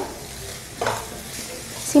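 Sliced vegetables stir-frying in a kadhai (wok) over high flame: a steady sizzle, with one stirring stroke through the vegetables a little under a second in.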